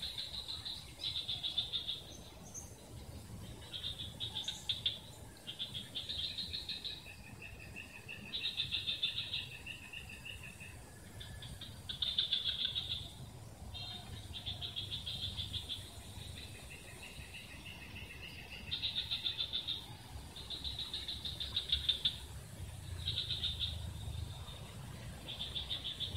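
Wildlife chorus: high pulsing trills about a second long, repeating every one to three seconds, with a lower, longer trill running between some of them.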